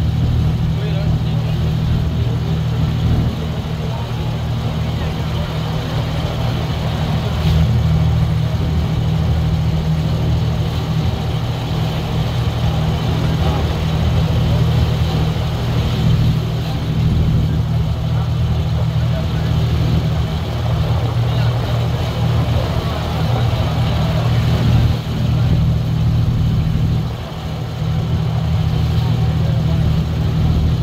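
Boat engine running steadily close by, a low drone that holds throughout with a brief dip near the end.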